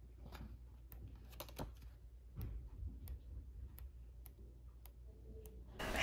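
Faint, scattered light clicks and taps of a paper booklet and card being handled, over a low steady hum.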